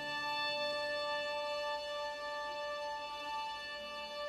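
Orchestra holding a soft, sustained high chord, with no low instruments sounding.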